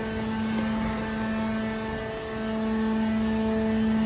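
Steady hum of running roll-forming machinery, a low drone with evenly spaced overtones over a background of mechanical noise.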